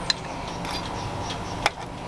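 A fork tapping once against a plate while cutting into a piece of fish, over a steady background hiss.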